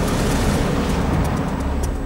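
A steady, loud rumbling roar of storm wind and heavy sea, with a background music bed.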